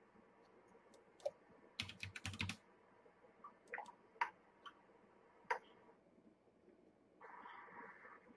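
Computer keyboard keys clicking faintly: a quick run of keystrokes about two seconds in, then scattered single presses. A short soft hiss near the end.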